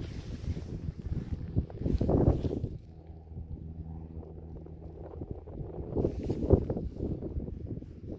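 Wind buffeting the microphone while loose soil is dug and scraped away by a gloved hand to uncover a coin, with scuffs and knocks. A steady low hum runs through the middle few seconds.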